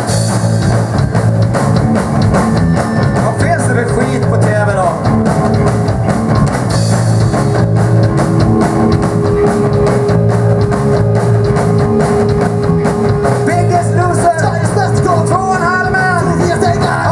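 Live rock band playing loud: electric guitar, bass guitar and a drum kit keeping a steady beat, with a note held through the middle of the passage.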